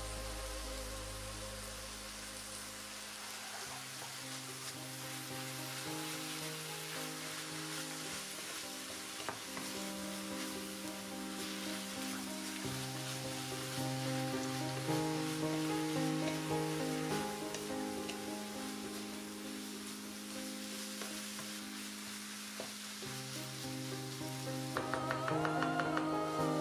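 Wild spinach and onion sizzling as they fry in a hot pan, stirred now and then with a wooden spatula. Soft background music with slow held notes plays under the frying.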